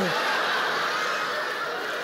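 A live comedy audience laughing together, a steady wash of crowd laughter that slowly dies down.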